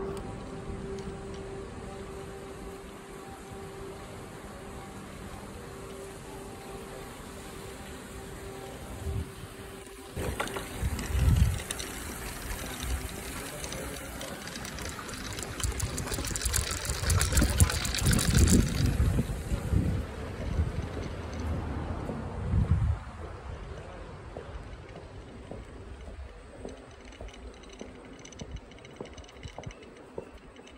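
Wind buffeting the microphone while riding along a city street on a scooter, with gusts of rumble and rushing noise through the middle that settle to a quieter hiss near the end. A steady tone runs through the first third.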